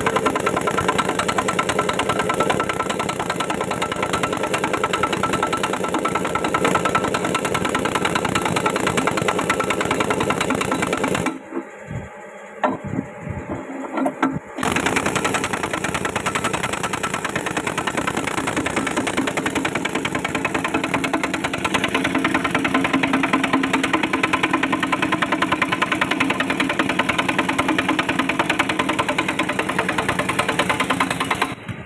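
An engine runs steadily and loudly. The sound drops away for about three seconds near the middle, then comes back.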